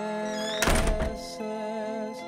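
Soft background music with sustained tones, broken by a single loud thud a little over half a second in.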